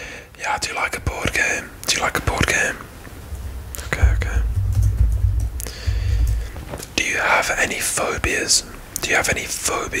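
A man whispering close to the microphone, in breathy, hissing phrases with short gaps. A low, muffled rumble runs under the whisper from about four to six and a half seconds in.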